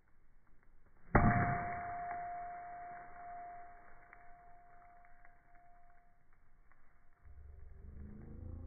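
A steel hammer strikes a hard crystal rock once with a loud clang about a second in, then rings in one steady tone that fades slowly over several seconds. The audio is slowed down, so the ring is drawn out.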